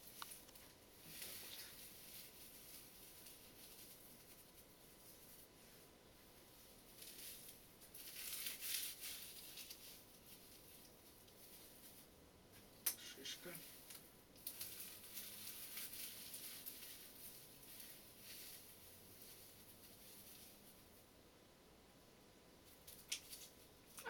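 Dry forest moss being rubbed and crumbled between the hands, a faint crackling rustle that comes in several spells, with one sharp click about thirteen seconds in.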